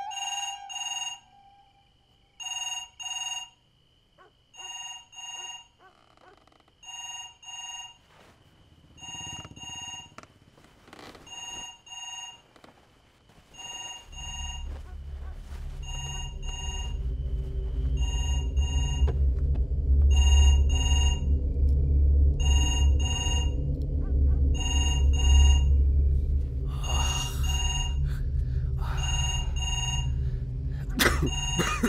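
Red push-button landline telephone's electronic ringer ringing in a double-ring pattern, a pair of short trills about every two seconds, over and over without being answered. From about halfway a low rumbling drone swells up underneath and grows louder than the rings.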